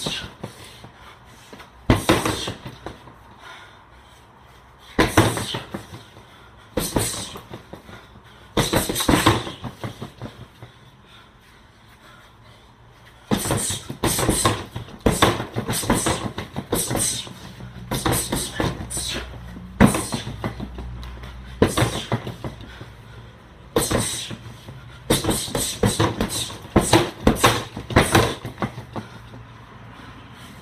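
Kicks and gloved punches landing on an Everlast Powercore freestanding heavy bag. A few single strikes come seconds apart, then rapid combinations of strikes follow through the second half.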